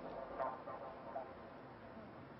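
Faint steady background noise of a racetrack broadcast, with a brief faint pitched sound about half a second in.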